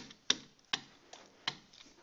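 Pen tip tapping and clicking against an interactive whiteboard surface during handwriting: four sharp, irregular clicks.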